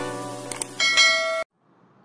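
Subscribe-button animation sound effects: a ringing, chime-like jingle with two quick clicks about half a second in, then a bright bell chime that cuts off abruptly about a second and a half in, leaving only faint hiss.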